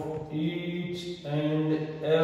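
A man's voice holding long, drawn-out steady tones in a chant-like drone, the middle stretch pitched a little higher.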